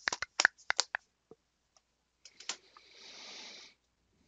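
Handling Blu-ray steelbook cases: a quick run of sharp clicks and taps in the first second, a few more taps past the middle, then a brief scraping slide about three seconds in.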